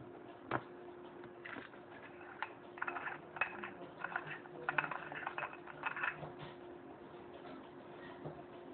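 Small cooling fan of the QHY8 camera's Peltier cooler humming steadily. From about one and a half to six and a half seconds in, a run of light rapid clicking and clattering sits over it.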